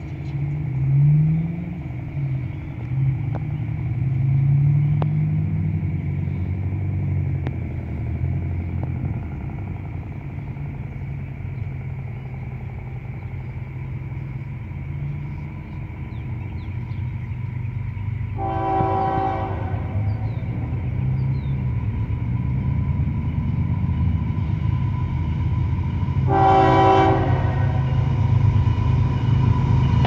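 Diesel freight locomotives approaching, their low engine rumble growing louder, with two blasts of the lead locomotive's multi-chime air horn, one a little past halfway and one near the end. In the first several seconds an engine sound rises and falls in pitch.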